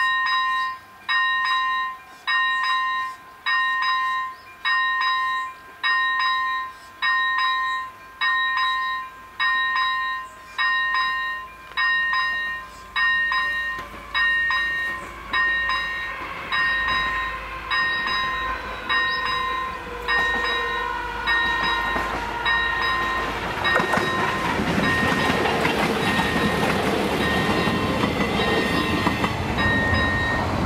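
A level-crossing warning bell rings about once a second as the crossing signals flash for an oncoming train. From about halfway through, a train's rumble builds and grows louder, drowning out the bell near the end.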